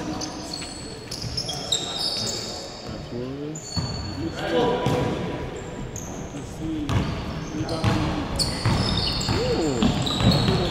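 Basketball bouncing on a hardwood gym floor, with sneakers squeaking in short high-pitched chirps and players' indistinct shouts, all echoing in a large hall.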